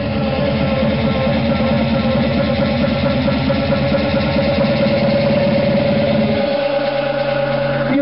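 Electronic dance music played over a festival sound system, in a breakdown: one long held synth tone over a rapid pulsing bass, which drops out about six and a half seconds in.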